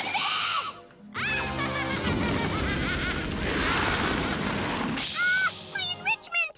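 Cartoon music under a long, noisy stretch of crashing and booming sound effects, as a pile of toys is destroyed and left as smoking heaps of ash. A short cry comes in the first second and shrill cries near the end.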